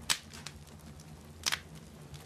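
Wood fire crackling in a fireplace: two sharp, loud pops, one right at the start and one about a second and a half in, with fainter ticks between, over a low steady hum.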